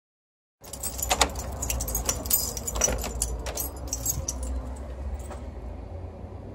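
Bunch of keys jangling and clicking against a wooden door's lock as it is unlocked and opened, many quick metallic jingles over a low rumble.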